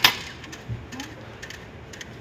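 A sharp mechanical clack from a ticket vending machine's banknote slot as it takes in the inserted note, followed by fainter small mechanical sounds.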